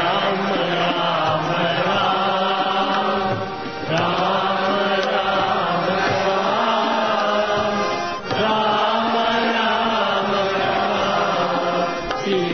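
Devotional chanting, sung in long, held phrases, with short breaks about four and eight seconds in.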